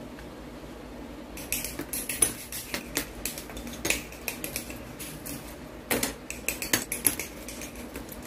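Small plastic model-kit parts clicking and clacking as they are handled and fitted together. An irregular run of sharp clicks starts about a second and a half in, with a busier cluster around six seconds.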